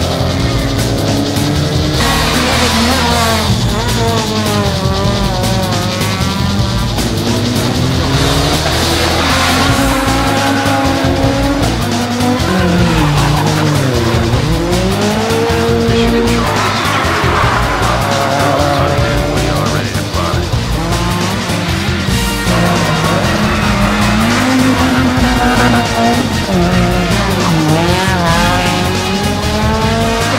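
Several rally cars in turn, their engines revving hard and dropping again and again through gear changes and corners, with tyre squeal, under background music.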